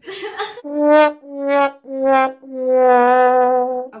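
Sad trombone sound effect: four brass notes stepping down in pitch, 'wah-wah-wah-waaah', the last one held longest, the comic cue for a flop.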